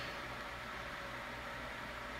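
Steady background hiss of room tone with a faint steady hum; no distinct sound event.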